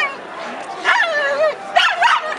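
A dog barking: a longer bark about a second in that falls in pitch, then a short sharp bark near the end.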